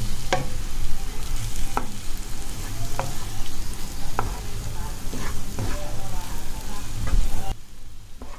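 Wooden spatula mixing cooked basmati rice into tomato masala in a nonstick kadai, over a frying sizzle, with a few sharp knocks of the spatula against the pan. The sound drops away suddenly near the end.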